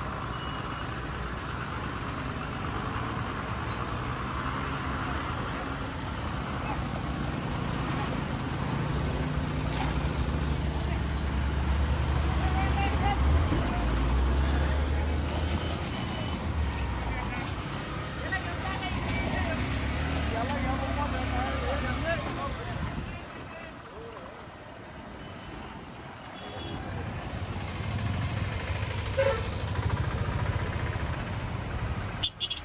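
Traffic-jam noise: motorcycle and truck engines running at low speed close by, with people's voices in the background. The engine rumble fades for a few seconds about three-quarters of the way through, then comes back.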